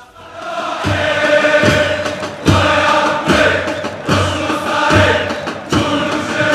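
Massed male voices singing a football supporters' chant in chorus over a drum beat a little more than once a second, fading in over the first second.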